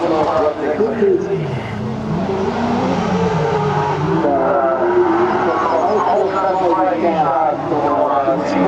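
Autocross race car engines revving hard, the pitch repeatedly rising and falling as the drivers accelerate and lift off around the track.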